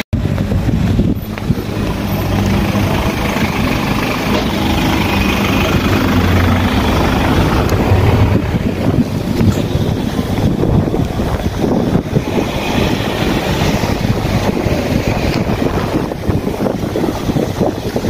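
Steady wind noise on a handheld phone microphone, with street traffic mixed in.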